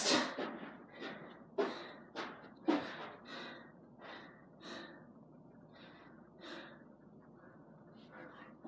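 A man panting hard after a set of burpees, with quick gasping breaths about two a second at first. The breaths slow and grow fainter as he recovers.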